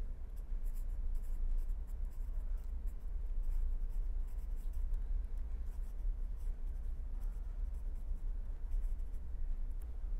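Marker pen writing on paper, a run of short scratchy strokes as a word is written out, over a steady low hum.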